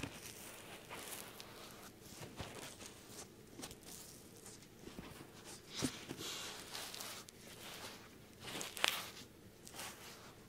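Soft irregular rubbing and rustling on a binaural microphone's ear during an ASMR ear cleaning, with louder scraping brushes about six and nine seconds in.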